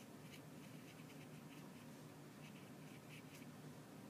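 Faint scratching of a pen writing on paper, in a quick irregular run of short strokes.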